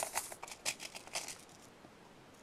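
Quick clicks and rattles of bead tubes being handled in a clear plastic storage case, dying away after about a second and a half.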